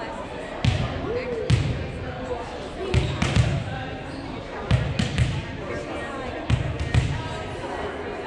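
Volleyball thumping as it is struck and bounces on a hardwood gym floor: about eight sharp thumps, often in pairs, over background chatter.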